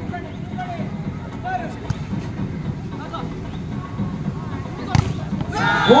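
Volleyball play with a background of crowd murmur and scattered voices and a few faint ball contacts. About five seconds in comes one sharp slap of the ball off a block at the net, which ends the rally.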